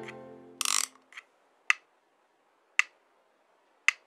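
The last notes of a folk song die away, then a short rustle and three sharp clicks evenly spaced about a second apart, keeping time as a count-in just before the next song starts.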